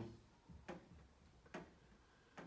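Near silence with faint, short ticks at an even pace, a little under one a second.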